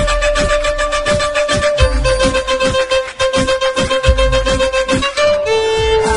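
Instrumental music: a violin holds long melody notes over a steady drum beat of about three hits a second and a bass line. The held note steps down in pitch about two seconds in and again near the end.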